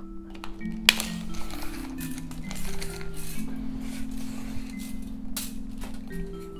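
Soft background music of sustained mallet-like notes, with a sharp click about a second in and another near the end.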